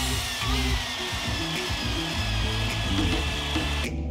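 A small electric motor running steadily with a high whine, over background music; it cuts off suddenly just before the end.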